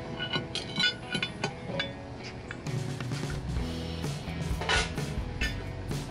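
Background music, with a few light metallic clinks in the first couple of seconds as a lid lifter hooks and lifts the cast iron Dutch oven lid.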